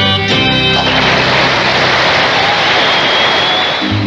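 A country band's last note dies away about a second in, followed by a studio audience applauding. Near the end a band strikes up the next number.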